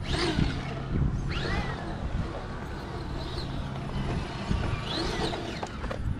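Electric motor and drivetrain of a radio-controlled scale rock crawler working as it climbs over rocks, whining up in pitch about three times as the throttle is applied.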